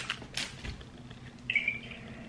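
Light rustling and clicking of a greeting card being handled in its plastic sleeve, with a short high chirp about one and a half seconds in.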